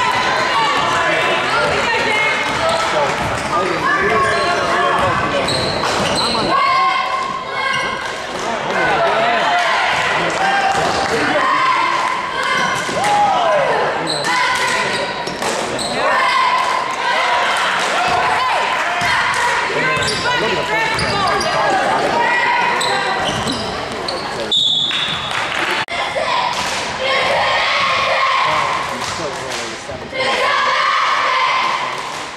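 Basketball game in a gym: a ball bouncing on the hardwood amid the chatter and shouts of the crowd and players. A referee's whistle sounds briefly about three-quarters of the way through.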